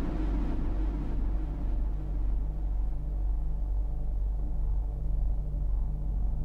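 Low synthesizer bass drone, held steady, with a softer tone above it swelling and fading about once a second.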